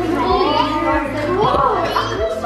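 A young child's excited, high-pitched voice, with women's voices, over background music with a steady beat.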